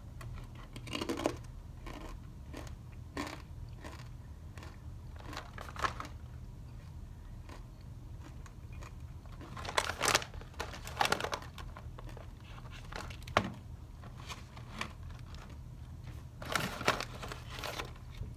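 Crunchy baked coconut chips being chewed, with short crackles spread through, and the snack bag crinkling in louder bursts about ten seconds in and again near the end. A steady low hum sits underneath.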